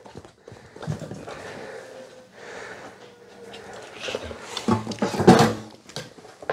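A dog snuffling and breathing as it moves around close by, with a few short knocks near the end as the toy mailbox's door is pulled open.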